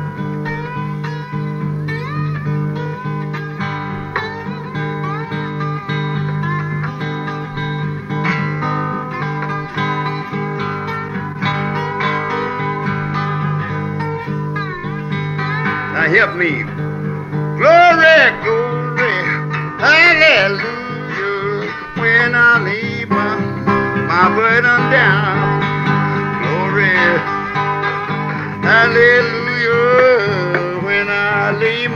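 Solo acoustic Memphis blues guitar: a steady low bass note rings under notes that slide and bend up and down the neck. The playing grows busier and louder from about halfway through.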